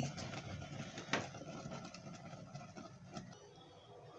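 Faint steady noise of a gas stove burner under a pot, with a single sharp click about a second in; the burner noise falls away about three seconds in as the heat is turned off.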